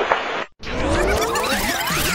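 A fast-forward transition sound effect that starts after a brief cut about half a second in: a dense sweep of many pitches gliding up and down, like audio played at high speed. Radio hiss is heard before the cut.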